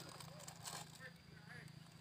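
Near silence, with faint scraping and rustling of a metal spoon scooping powder out of a foil insecticide bag; a brief soft rustle comes about two-thirds of a second in.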